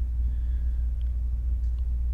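Steady deep hum with no other sound of note.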